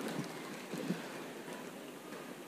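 Faint, steady hiss of room and microphone noise during a pause in speech, with a few faint, indistinct short sounds.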